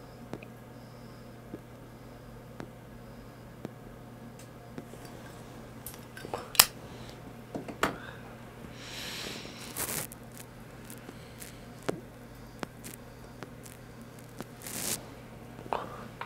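Tobacco pipe being puffed, with soft lip pops, short breathy exhales of smoke and a few sharp clicks, over a steady low hum.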